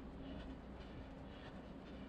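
A runner's regular footfalls and breathing heard from a head-mounted camera, a rhythmic pattern about twice a second over a low steady rumble.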